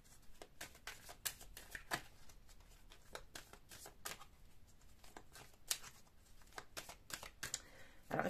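A deck of cards shuffled by hand: a faint run of irregular soft clicks and flicks as the card edges slide and slap together.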